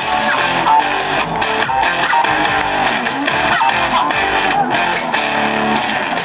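Live disco polo band music played loud through a stage PA, with a steady dance beat.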